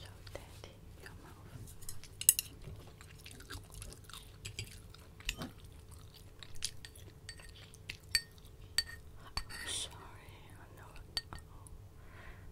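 Close-miked eating sounds: chewing dim sum, with many sharp clicks of chopsticks against a porcelain bowl and plate, the loudest about two seconds in.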